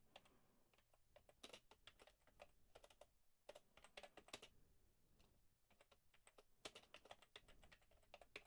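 Faint typing on a computer keyboard: two runs of quick keystrokes with a pause of about a second and a half between them.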